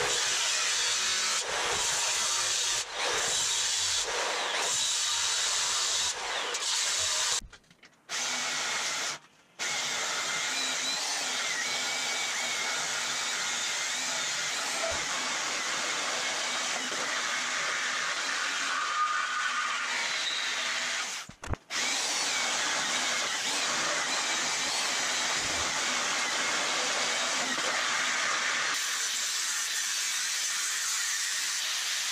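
Angle grinder cutting into a steel chassis frame rail, running steadily with a steady high grinding noise. It stops briefly a few times, near 8, 9 and 21 seconds in.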